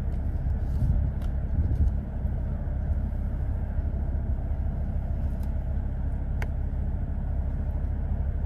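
Steady low rumble of a car idling, heard from inside the cabin, with a faint click about six seconds in.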